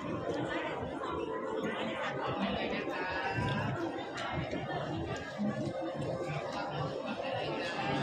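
Crowd chatter: many shoppers' voices overlapping at a steady level in a large indoor hall.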